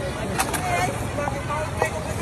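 People talking over a steady rush of fast-flowing water. Two sharp clicks come through, about half a second in and near the end.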